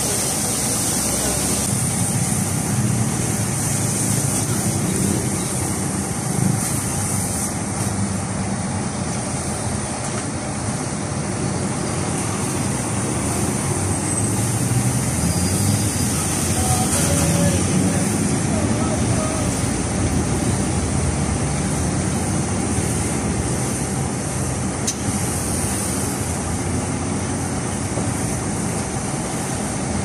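A pressure washer spraying water on cars, a steady hiss over a low rumble.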